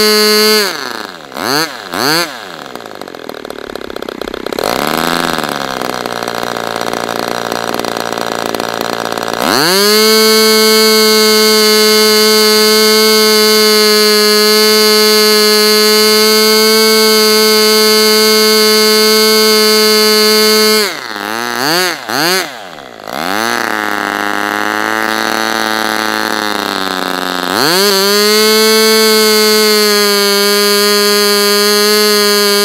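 Super Tigre G40 Ring two-stroke glow engine turning a propeller at about 12,900 rpm with a high steady tone, throttled back twice with quick rev swoops to a slower run for several seconds, then opened up again to full speed. The owner suspects the front bearings are worn and need replacing.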